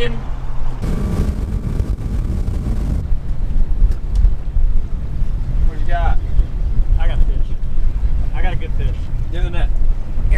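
Wind buffeting the microphone on an open boat, a loud, steady low rumble. Short bursts of voices break through from about six seconds in.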